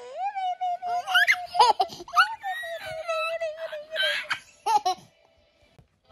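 A toddler laughing and giggling, with a held high note and several sharp rising squeals, stopping about five seconds in.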